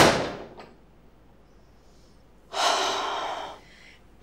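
A sharp clack that rings off over about half a second, then, about two and a half seconds in, a woman's breathy sigh lasting about a second.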